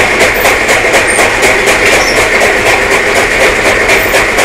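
Belt-driven chaff cutter chopping dry straw as it is fed in by hand. It runs loud and steady, its blades cutting in an even rhythm of about six chops a second over a constant whir.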